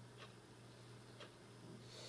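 Faint clock ticking about once a second, two ticks, over a low steady hum in a quiet small room.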